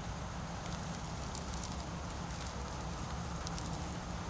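Dry leaves and grass crackling and rustling in scattered short clicks, over a steady low rumble.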